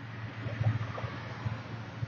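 A man drinking from a mug: a few soft, low sipping and swallowing sounds about half a second apart, over a steady low background hum.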